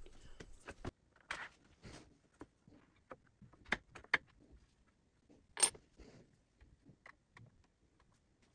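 Faint, scattered small clicks and taps of hands handling a plywood jig and its metal hardware, with a sharper click about five and a half seconds in.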